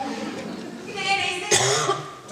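A stage actor's voice in a theatre, with a loud cough about a second and a half in.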